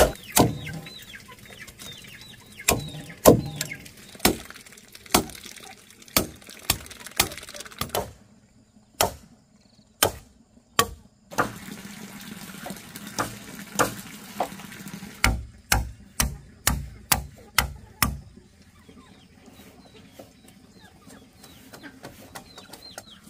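Chickens clucking, with a run of irregular sharp knocks or taps that are the loudest sounds and die away in the last few seconds.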